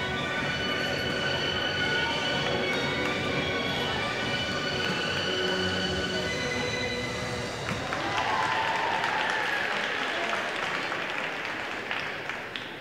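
Large sports-hall ambience with several steady held tones, like distant background music, then from about eight seconds in a wash of applause that eases near the end.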